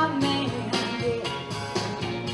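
Rock-and-roll music played for dancing, with guitar over a steady beat of about three to four strokes a second; the singing drops out briefly between lines.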